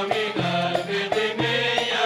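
Jordanian traditional folk song performed live by a folk troupe: a chorus of voices singing together over instrumental accompaniment, with a steady beat about three times a second.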